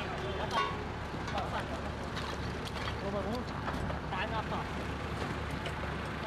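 Voices talking over a steady low rumble of vehicle engines and traffic, heard as a video's soundtrack played back in a hall.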